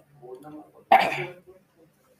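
A man coughs once: a sudden burst about a second in that dies away quickly.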